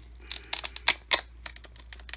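Velcro on a handmade cardstock box flap being pulled apart: a string of irregular sharp clicks and crackles, the loudest a little under a second in and just after a second.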